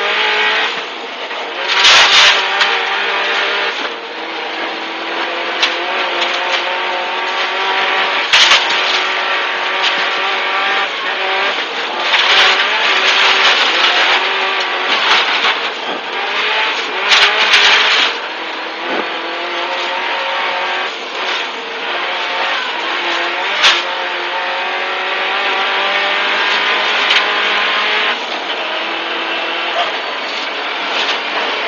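Subaru Impreza WRX STI rally car's turbocharged flat-four engine, heard from inside the cabin at full stage pace: the revs climb and drop again and again through gear changes and braking. Several short bursts of louder noise break through over the engine.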